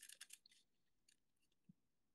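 Faint, brief crisp rustling and clicking of glossy hockey trading cards being slid off a stack by hand, in the first half second.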